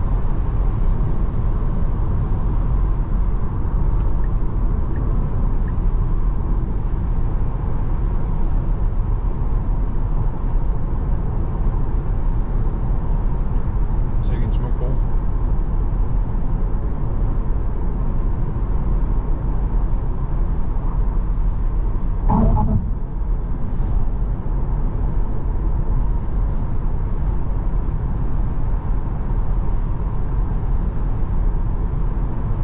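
Steady tyre and wind noise inside the cabin of a 2021 Tesla Model 3 Performance at motorway speed: an even low rumble with no engine note. About two-thirds of the way through there is one short pitched sound.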